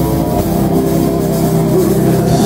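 Live metal band, with distorted electric guitars and bass holding sustained notes and little drumming.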